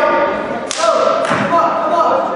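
Voices shouting in a gym hall, with two thumps on the wrestling mat, the first about two thirds of a second in and the second half a second later.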